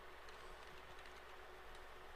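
Near silence with a few faint computer keyboard keystrokes, as a short terminal command is typed and entered.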